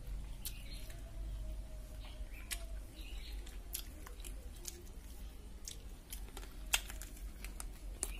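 A child chewing and biting food close to the microphone: irregular sharp clicks and smacks of the mouth, the loudest a little before the end, over a low steady hum.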